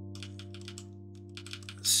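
Computer keyboard keystrokes: a quick run of clicks in the first second and a few more near the end, over a steady low hum.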